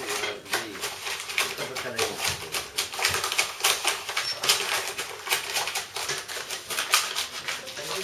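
Stiff paper and cardboard crackling and rustling in a dense run of irregular sharp clicks as a rolled paper tube is pressed and worked by hand on a cardboard sheet.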